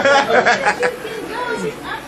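People's voices chattering, busiest and loudest in the first second, then quieter talk.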